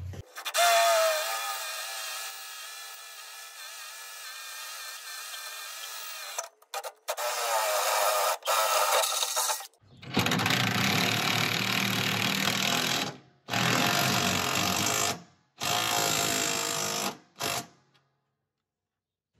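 Cordless drill boring up through the aluminum pontoon cross-member and tow tower brace. It runs steadily with a whine for about six seconds, then in four shorter bursts with brief pauses, as the bit is pushed through the metal.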